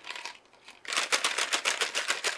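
Morinaga Choco Ball chocolate balls rattling inside their small cardboard boxes as the boxes are shaken by hand. A fast, even rattle starts about a second in.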